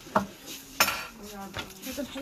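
Sharp metallic clinks of gold jewellery and its display being handled: two in the first second, the second one the loudest, then a few softer knocks.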